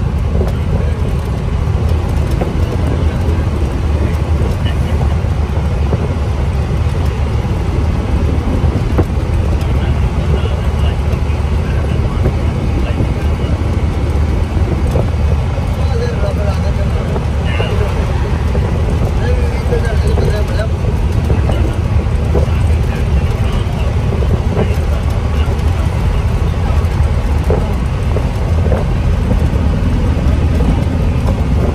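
Steady low rumble of engine and road noise from a vehicle driving along a highway.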